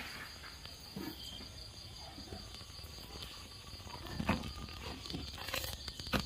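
Wood fire burning in an open hearth, crackling with a few sharp pops, the loudest a little after four seconds in and again near the end.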